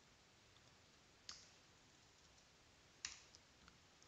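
Near silence broken by a few faint computer keyboard clicks, one about a second in and a short cluster near the end.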